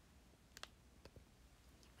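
Near silence: quiet room tone broken by a few faint, short clicks, twice about half a second in and twice more around a second in.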